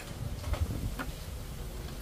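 Faint steady low rumble of outdoor background noise, with a few soft taps about half a second and a second in.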